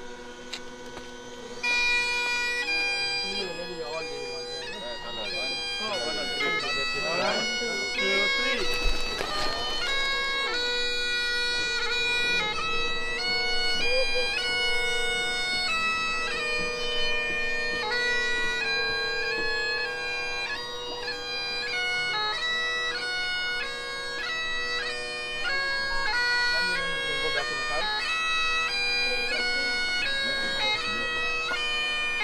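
Bagpipes playing a slow melody over a steady drone, starting about two seconds in.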